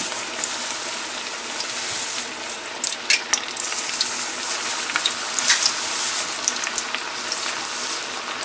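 Medu vada (urad dal batter fritters) deep-frying in hot oil: a steady sizzle with scattered sharp pops and crackles.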